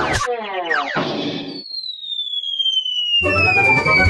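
Orchestral intro music breaks off for a cartoon falling-whistle effect: a quick run of falling notes, then one long whistle gliding slowly down in pitch. The orchestral theme comes back in about three seconds in, under the whistle.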